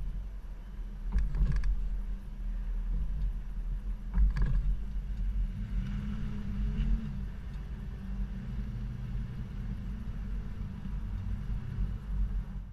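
Low rumble of a small SUV driving slowly over full speed bumps, with a few sharp knocks in the first half as the wheels go over the bumps.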